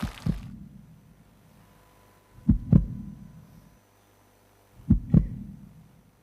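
Heartbeat sound effect: three double thumps, lub-dub, about two and a half seconds apart, over a faint steady low hum.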